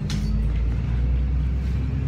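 Bus engine and running noise heard from inside the passenger cabin: a steady low rumble with a faint engine hum. A short brush of noise right at the start, as the phone is moved.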